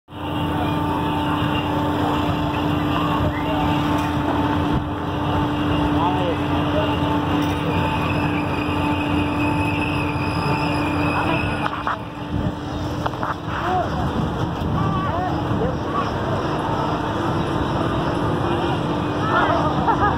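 Steady hum of fairground ride machinery, a low drone with a fainter higher tone held through it, with people's voices over it, more of them near the end.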